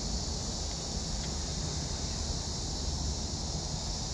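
Steady high-pitched insect chorus, with a low rumble of wind on the microphone underneath.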